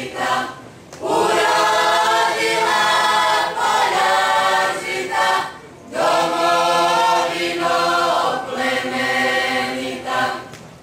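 A mixed group of men and women singing a Croatian folk song together in long held phrases, with short breaks for breath about a second in and again just before six seconds. The last phrase stops at the end.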